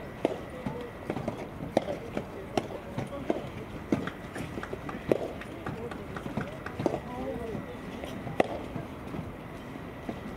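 Soft tennis rally: sharp pops of the soft rubber ball being struck by the rackets and bouncing on the court, coming every second or so, with players' footsteps on the court.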